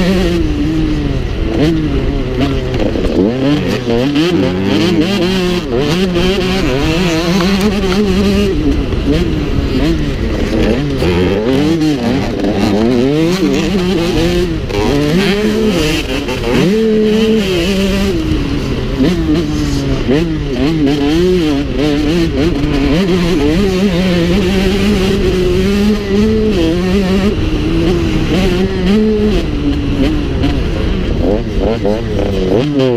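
Motocross bike engine revving hard and falling back over and over as the rider opens and closes the throttle through the track's straights and turns, heard from the rider's helmet.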